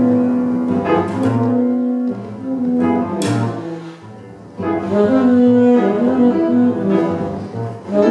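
Free-improvised jazz played live: a saxophone holds and bends long notes over low double bass notes. A brief lull about halfway, then both come back in.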